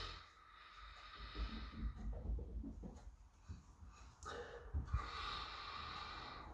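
A person sniffing the aroma of a glass of beer with his nose in the glass: two long, hissy sniffs, the second starting about four seconds in, with a few low bumps between them.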